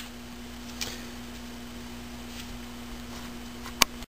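Light handling clicks of a plastic router case and its antenna cable connector, with one sharper click near the end as the case is set down on the workbench, over a steady low hum.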